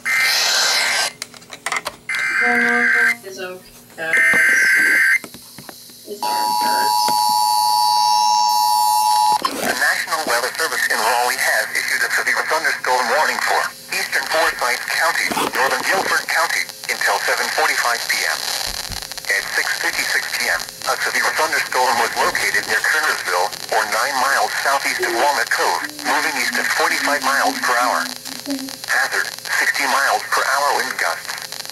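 An Emergency Alert System severe thunderstorm warning playing through an FM radio's speaker. It opens with short bursts of data-header tones, then about three seconds of the steady two-tone attention signal. From about ten seconds in, a voice reads the warning.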